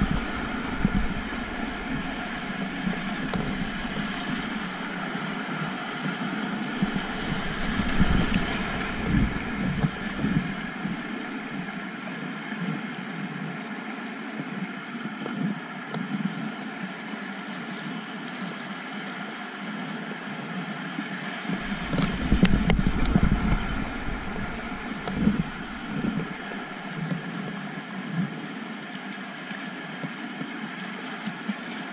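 Whitewater rapids rushing around a kayak as it runs a rocky river, heard close up from a camera on the boat, with paddle splashes. Heavier low rumbling buffets come in about a quarter of the way through and again about three quarters of the way through.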